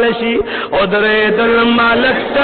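A man chanting a Pashto devotional verse in long, held melodic notes that glide from one pitch to the next.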